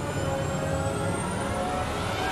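Science-fiction film sound design of an alien war machine: a steady mechanical whirring drone made of several held tones, with a high whine slowly rising.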